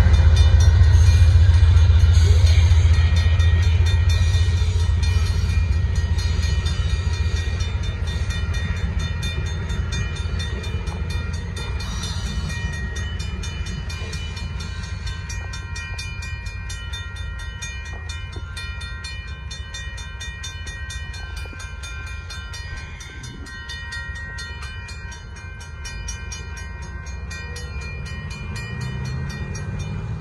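Amtrak passenger train rolling through a grade crossing, its low rumble fading steadily as the last cars pass and the train moves away. A railroad crossing warning bell rings steadily with even, rapid strokes throughout.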